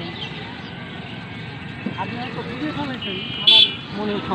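Cycle-rickshaw handlebar bell rung once, short and loud, about three and a half seconds in, over steady road noise.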